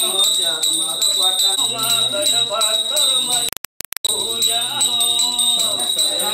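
Small brass puja hand bells rung continuously with a quick, even shake, over a devotional song with singing. The sound cuts out for a split second just past halfway, then resumes.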